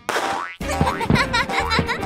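A cartoon sound effect sweeping downward in pitch at the start, followed about half a second in by background music with a pulsing bass beat and short high notes.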